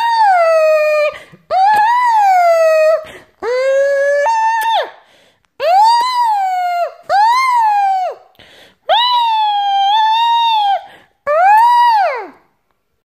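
A high-pitched voice crying in a run of about seven drawn-out wails, each a second or two long, rising and then falling in pitch, with short breaths between them.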